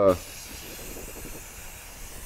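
Aerosol spray mold release hissing from the can in one steady burst, coating the cured silicone half of a two-part mold before the second half is poured.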